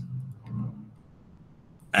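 A few faint computer mouse clicks over quiet room tone, with a brief low voice murmur at the start.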